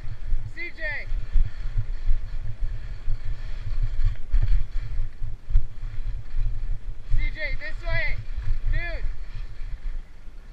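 Wind buffeting the microphone of a camera worn by a skier moving downhill: a heavy, steady low rumble throughout. Short wordless voice sounds, bending up and down in pitch, come about half a second in and again several times between seven and nine seconds.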